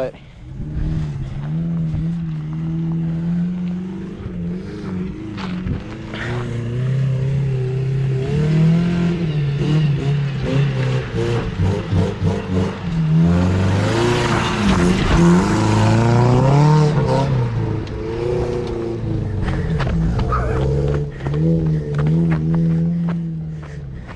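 An off-road truck's engine revving hard on a steep dirt-trail hill climb, its pitch rising and falling as the throttle is worked. It is loudest a little past the middle, as the truck comes up and rushes past close by.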